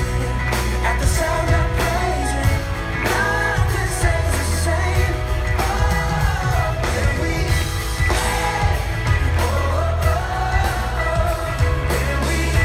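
Live band performing a pop-rock song: a lead singer's sung phrases over heavy sustained bass and drums, recorded from within the audience.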